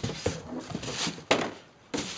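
Plastic spin-mop bucket lifted out of a cardboard box and set down, with rustling and scraping of cardboard and plastic packaging and one sharp knock about two-thirds of the way through.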